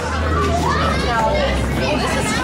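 Several voices, children's among them, talking over one another, with a steady low rumble underneath from the shuttle van running.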